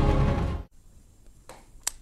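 Programme theme music with a heavy bass line cuts off abruptly under a second in. It is followed by quiet with two clicks near the end, the second one sharp.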